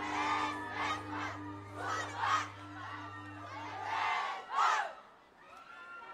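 A troupe of street dancers shouting together in several loud bursts over a held musical note, at the close of their routine. The music cuts off about four seconds in, after one last loud shout.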